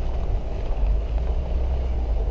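Steady low rumble inside the cabin of a Chevrolet Traverse SUV crawling over a rough, snowy dirt road.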